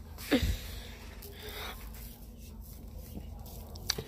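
A brief falling voice sound close to the microphone about a third of a second in, then a soft breath, over low rumble from the phone being handled; a short click near the end.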